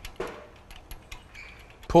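Light metallic clicks and small rattles, a few scattered ticks over two seconds, as a BMW N63 timing chain and exhaust cam adjuster are handled and seated by hand.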